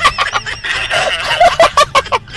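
A young man laughing hard in a quick run of loud, high-pitched "ha ha ha" bursts.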